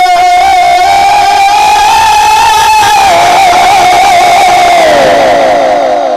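A man singing one long held note of a naat into a loud microphone. The note rises slightly, dips about halfway through, then slides down with a wavering shake near the end. A crowd shouts underneath.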